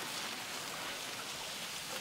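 Steady hissing rush of water against the hull of a paper origami boat coated in water sealant as it is pushed out onto the lake.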